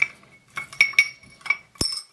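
Metal lens barrel parts of a Soviet I50U-1 enlarger lens clinking against a glass dish, which rings briefly after each tap. There are four or five clinks, then a duller, heavier knock near the end.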